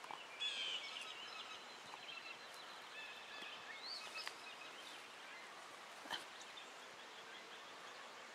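Quiet outdoor background with faint small songbirds chirping and twittering: a quick run of chirps about half a second in, then scattered single calls, and one sharp click about six seconds in.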